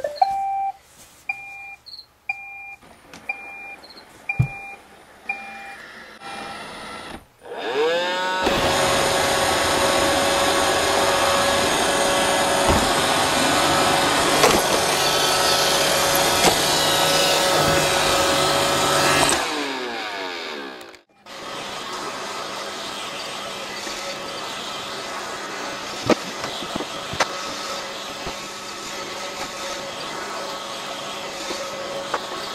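iRobot Roomba 530 robot vacuum: a short rising tone, then a string of short evenly spaced beeps for about five seconds. About seven seconds in, its motors whirr up into a loud steady run with a steady whine, then wind down with a falling whirr near twenty seconds in. After a moment's drop the vacuum runs on, quieter.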